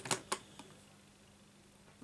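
A few light clicks and taps in the first half second as loose animal-shaped puzzle pieces are moved and fitted together by hand.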